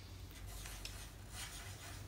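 Two wooden pencils scratching faintly across paper as lines are drawn without lifting, the graphite rasp rising in brief smears.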